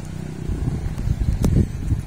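A steady low engine-like rumble, with one sharp click about one and a half seconds in.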